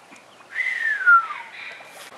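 A person whistling one long note that glides down in pitch, an impressed whistle at a big find.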